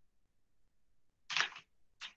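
A quick cluster of computer keyboard keystrokes about a second and a half in.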